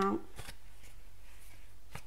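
Cardboard sleeve and plastic tray of a mozzarella-stick pack being handled as the tray is slid out of the sleeve: light rustling with two short crisp clicks, one about half a second in and one near the end.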